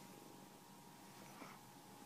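Very faint domestic cat purring, with a brief faint sound about a second and a half in.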